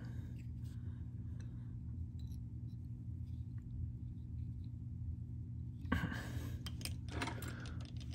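Faint handling sounds of fly tying: light clicks and rustles as thread is wrapped and tied down with a bobbin holder at the vise, with a few sharper clicks about six and seven seconds in. A steady low hum runs underneath.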